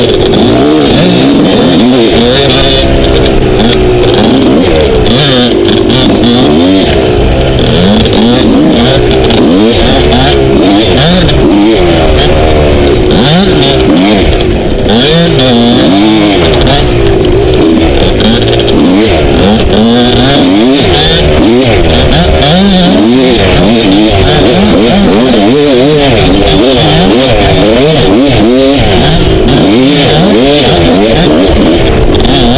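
Dirt bike engine on the move, revving up and down continuously as the throttle is opened and closed through the turns, heard loud and close from a helmet-mounted camera.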